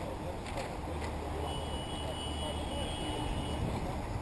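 Steady race-track ambience of radio-controlled short-course trucks running on a dirt off-road track, with people talking in the background. A faint high thin whine comes in about a second and a half in and lasts about two seconds.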